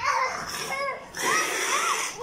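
A child's high-pitched shrieks and squeals during rough play-wrestling, with a noisy rush over the second half.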